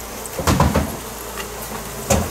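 Short cluster of knocks and scrapes about half a second in, with a few fainter clicks after: a blade and a heavy slab of old honeycomb being pried loose from the wooden wall framing.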